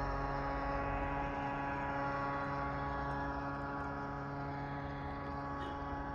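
A steady mechanical hum with several even, unchanging tones, holding at the same level throughout.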